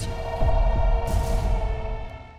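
A low, dark music drone: steady held tones over deep bass, swelling about half a second in and fading away near the end.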